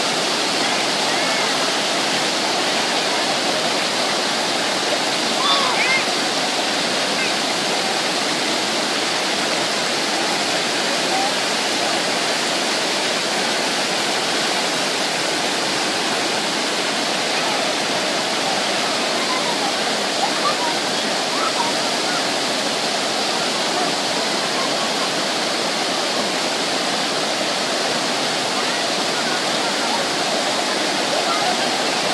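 Steady rush of a waterfall pouring over rocks, an even wash of water noise that does not let up, with faint voices of people heard under it now and then.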